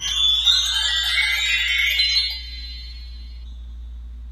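Magical sparkle sound effect: a shimmering cascade of high chime-like tones that sweeps upward and fades after about two seconds to a faint ringing, over a steady low hum.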